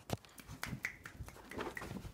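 A small terrier's claws and paws clicking and scrabbling in a quick, irregular run of light taps as it climbs up onto a bed, with a couple of brief high squeaks.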